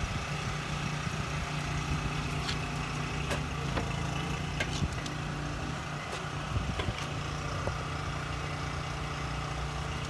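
Compressed-air blow gun hissing steadily over a continuous low machine hum, with a few faint clicks.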